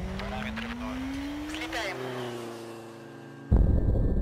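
Action film trailer soundtrack: a pitched sound rising steadily over the first two seconds, with brief voices, settles into a held tone that fades. A sudden loud hit comes about three and a half seconds in.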